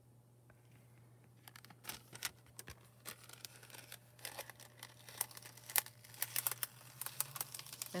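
Thin metallic transfer-foil sheets crinkling and crackling as they are handled and peeled off freshly foiled cardstock, starting about a second and a half in and going on in irregular runs of crackles. A low steady hum runs underneath.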